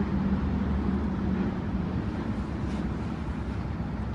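Steady outdoor background noise with a low rumble and no distinct events, picked up by a news field microphone.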